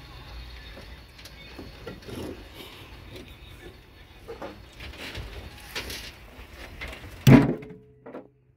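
Loose rock knocking and scraping against other rock and the steel of a stopped jaw crusher as stones are shifted by hand in its jaws, with one loud sharp knock about seven seconds in. The crusher has been stopped by a power cut.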